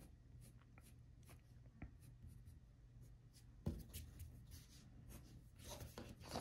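Graphite pencil scratching on paper in many short, faint strokes as a drawing is sketched. A single thump comes about two-thirds of the way through.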